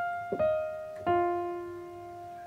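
Piano notes played slowly one at a time in a descending right-hand pattern: F, E-flat, then the lower F. A new note sounds about a third of a second in and a lower one about a second in, each left to ring.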